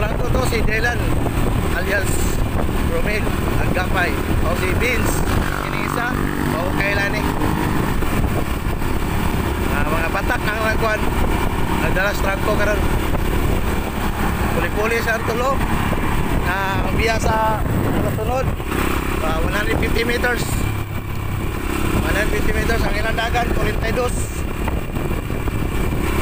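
Yamaha motorcycle engine running steadily at cruising speed, about 40 km/h, with voices heard over it.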